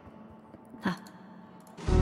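A woman makes one short breathy vocal sound about a second in. Near the end a loud backing track starts suddenly with strummed guitar.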